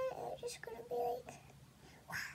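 A young girl humming a few short, steady notes, which stop a little over halfway through.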